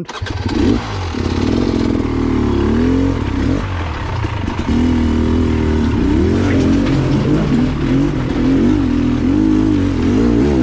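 Enduro dirt bike engine starting right after stalling, then revving up and down repeatedly as the bike is ridden over rocky ground.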